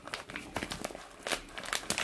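Clear plastic pocket-page sleeve crinkling in an irregular run of crackles as fingers work inside a pocket to pull out small items.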